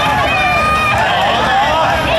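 Loud voices, sung or shouted with some notes held, from a yosakoi dance team's performance, over crowd noise.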